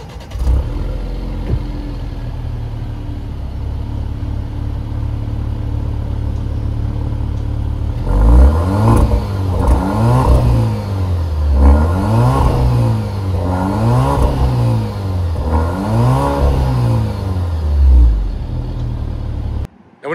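2024 Alfa Romeo Giulia Veloce Q2's 2.0-litre turbocharged inline-four heard at the exhaust tip, idling steadily for about eight seconds, then revved five times about two seconds apart, each rev rising and falling back, before settling to idle.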